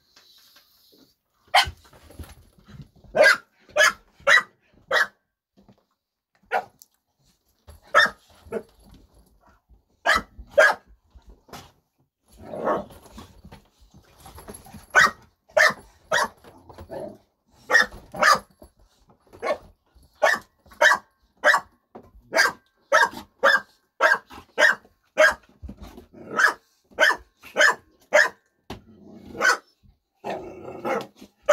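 Pit bulls barking: sharp single barks in runs of several about a second apart, with a couple of longer growling stretches between them, in a squabble over a piece of bread the mother is guarding.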